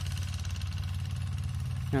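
A small engine running steadily at idle, a low even drone with no change in speed.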